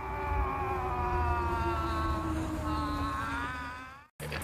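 A sustained chord of steady tones from the film's soundtrack, slowly sinking in pitch over a low rumble, fading in and then cutting out at the end.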